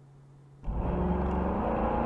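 Car engine and road noise heard from inside a moving car through a dash cam. It starts abruptly about half a second in, after a faint hum, and runs on as a steady low rumble.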